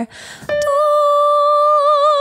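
A woman singing one long held high note on the word "die", opened to an "ah" vowel, after a short breath. The note starts as a straight tone and develops an even vibrato about halfway through.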